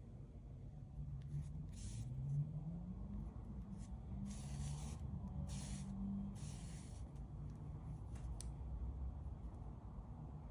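Yarn drawn through crocheted stitches with a metal sewing needle while seaming two panels: short swishing rubs, a few near the start and a run of longer ones in the middle.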